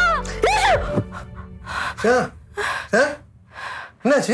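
Background music with a sung line stops about a second in, then a woman takes three short, heavy gasping breaths.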